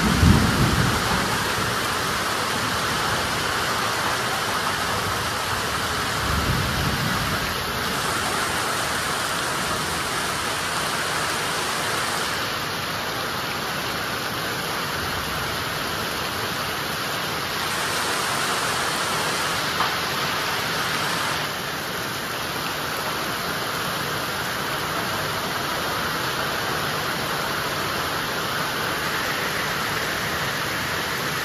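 Heavy monsoon rain pouring steadily. A low rumble of thunder comes right at the start, and a softer one about six seconds in.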